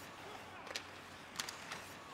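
Rink sounds of ice hockey play: several sharp clacks of sticks, puck and skates on the ice over a steady arena hubbub.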